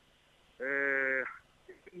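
A man's drawn-out hesitation "ehh": one steady, level-pitched held vowel of just under a second, starting about half a second in, with near silence on either side.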